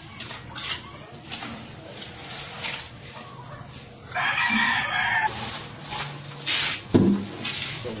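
A rooster crowing once, about four seconds in, for about a second. A single sharp knock comes near the end.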